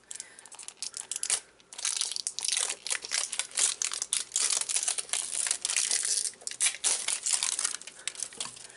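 Plastic wrapper on a toy capsule package crinkling and tearing as its tear strip is pulled open, a dense run of crackles from about two seconds in until near the end.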